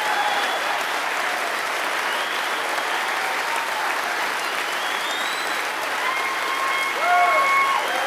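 Audience applauding steadily, with a voice calling out over the applause near the end.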